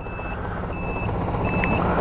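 Suzuki Burgman scooter's turn-signal beeper sounding a steady high beep about one and a half times a second, in time with the flashing signal. Under it, the low rumble of a pickup truck passing close by grows louder.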